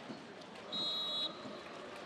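Referee's whistle: one short, steady blast of about half a second, a second in, signalling the kick-off of the second half.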